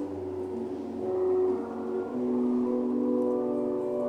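Church music played on a keyboard instrument: held chords whose notes change about a second in and again a little past the middle.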